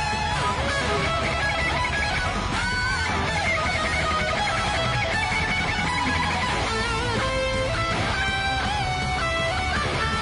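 Heavy metal electric guitar playing melodic lead lines over a full band track, with bent, wavering held notes.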